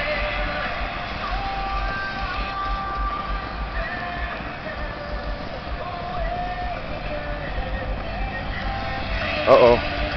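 Rock music from a truck's Alpine car audio system, playing loud enough to carry across a large open lot and heard from far away. The music comes through as melody lines, mostly guitar and vocal range, with a steady low rumble of wind on the microphone underneath.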